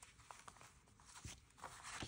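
Faint rustling and soft flicks of paper banknotes handled and counted out onto a table, a little busier near the end.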